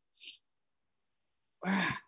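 A person sighing: a short faint hiss of breath, a silent pause, then an audible breathy exhale near the end, just before answering a tough question.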